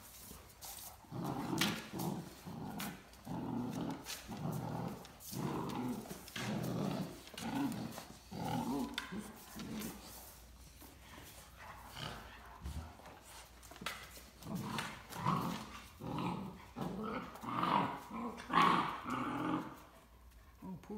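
Great Dane growling in play during a tug of war over a plush toy: a run of short growls about one a second, easing off in the middle and getting louder near the end.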